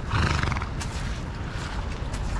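A horse whinnies once, a short loud call of about half a second just after the start.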